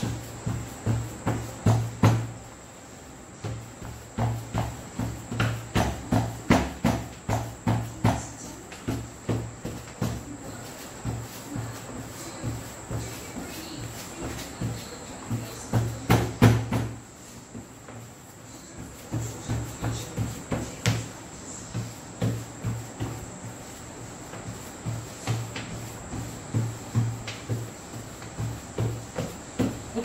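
Stiff solid-tip brush being tapped repeatedly against rolled fondant on a work surface to give it a rough, towel-like texture. A steady run of taps, two to three a second, with two short pauses.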